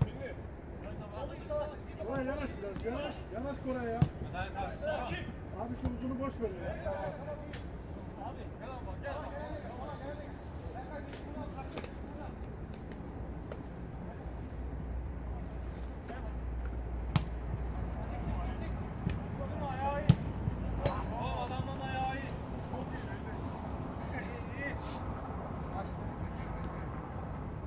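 Players shouting to each other on an artificial-turf football pitch, with a few sharp thuds of the ball being kicked, over a low steady rumble.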